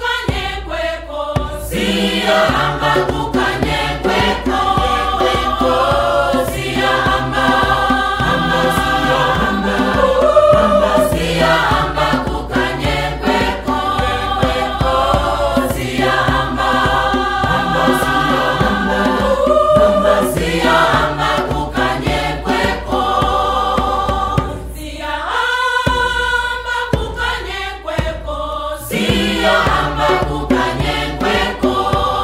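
A choir singing long, sustained chords, the voices wavering with vibrato, with a brief drop in level near the end before the singing picks up again.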